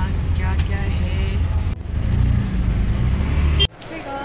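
Steady low rumble of a moving car heard from inside the cabin, cutting off suddenly near the end.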